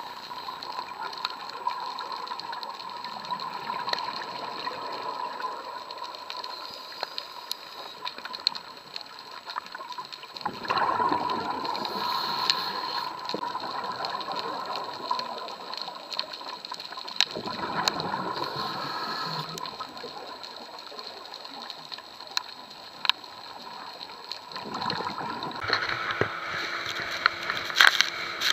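Underwater sound from a diver's camera: scuba breathing bubbles rushing and gurgling in long surges, loudest about ten seconds in, again around seventeen seconds, and near the end.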